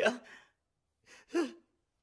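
Speech only: a voice asks "kya?" ("what?"), then after a moment of silence gives two brief breathy vocal sounds, like a sigh or gasp.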